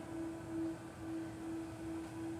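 A single steady humming tone, low to mid in pitch, held without a break and gently swelling and fading in loudness.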